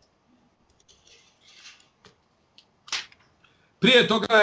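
Faint rustling, then a single sharp click about three seconds in, followed by a man starting to speak just before the end.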